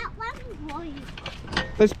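A faint voice for about the first second, then a man starts to speak near the end.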